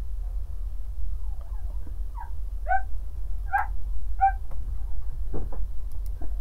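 Steady low electrical hum, with four short high squeaking calls about two to four seconds in, like a small animal's, and a soft knock near the end.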